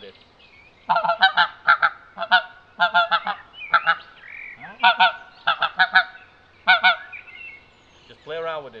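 Pinkfoot Hammer pink-footed goose call sounded by coughing into it, the hands closed a little around it for the deep tones. It gives a string of short, sharp honks in quick clusters, starting about a second in.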